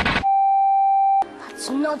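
A single steady electronic beep tone, loud and flat, lasting about a second. It cuts in abruptly as a noisy, chaotic clamour stops and cuts off just as abruptly.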